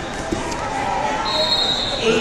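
Echoing hall ambience of a wrestling tournament: a babble of distant voices, a soft thud about a third of a second in, and a steady high referee's whistle from about two-thirds of the way in to the end.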